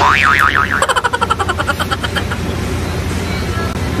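A cartoon 'boing' sound effect: a wobbling spring twang that breaks into a fast rattle about a second in and fades away over the next two seconds.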